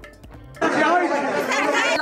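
Quiet background music, then a little over half a second in, a sudden switch to loud on-location audio of several people talking over one another.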